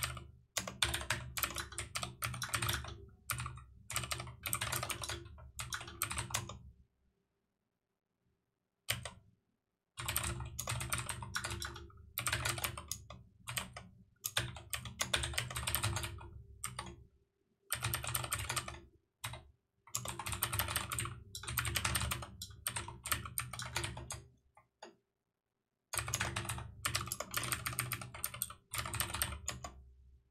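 Typing on a computer keyboard: quick runs of keystrokes broken by short pauses, the longest about seven seconds in.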